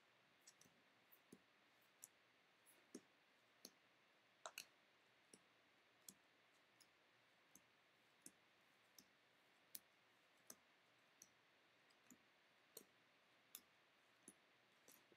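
Faint, sharp clicks at an even pace, about one every three-quarters of a second: trading cards snapping as they are flipped one at a time through a stack held in the hand.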